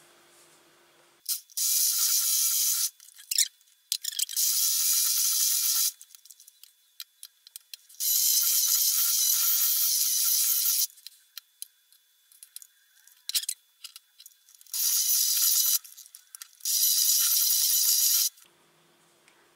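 Electric hand mixer with wire beaters running in five short bursts of about one to three seconds each, beating soft butter and sugar in a glass bowl. Between bursts the motor stops, leaving quiet gaps with small clicks.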